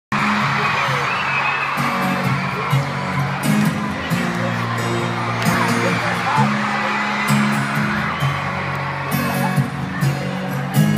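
A stadium crowd screaming and cheering over a live pop band's music. Low held chords change every second or so, with a sharp hit about every two seconds.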